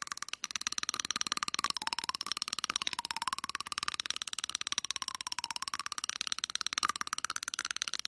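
Greyhound chattering its teeth: a fast, steady run of small clicks. Greyhounds make this sound when they are relaxed, excited and feel safe, not because they are cold or stressed.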